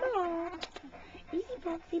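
Bullmastiff giving one drawn-out whine that falls in pitch and lasts about half a second, followed by a woman softly saying "easy".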